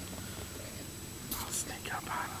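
A person whispering briefly, a few hissy syllables about a second and a half in, over a faint steady background.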